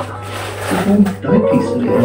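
Fruit machine electronic jingles and tones, with a voice talking over them.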